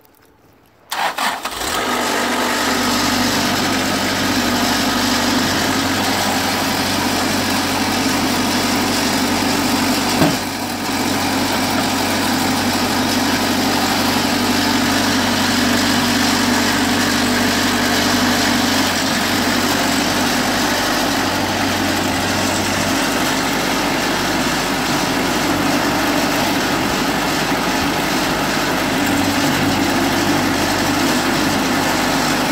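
Wood-Mizer Super Hydraulic portable sawmill's engine starting about a second in, then running steadily, with a single knock about ten seconds in.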